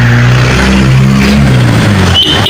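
Car engine running close by in slow street traffic: a steady low hum whose pitch shifts slightly as the vehicle moves.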